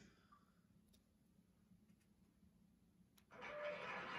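Near silence: room tone, with a faint sound rising in the last second.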